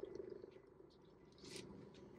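Very faint sounds of a person biting into and chewing a cheeseburger held in a paper wrapper, with a soft brief rustle about one and a half seconds in.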